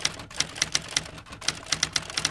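Typewriter keystroke sound effect: a quick, uneven run of sharp key clacks, about five or six a second, keeping time with caption text typing itself onto the screen.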